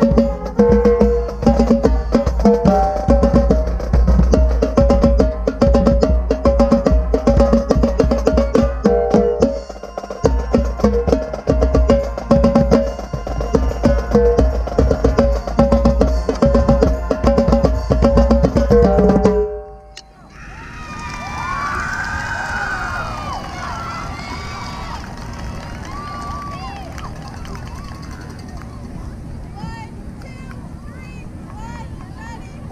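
Marching tenor drums played close up in fast, dense rhythmic patterns over the band, stopping abruptly about two-thirds of the way through. Then people cheering and shouting.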